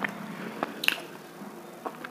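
Close-miked mouth chewing: a few sharp crunches and wet clicks, the loudest about a second in.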